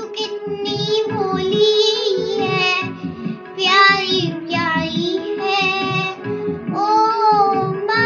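A child singing a melodic song with wavering, ornamented notes over an instrumental backing with a steady drone and a rhythmic beat.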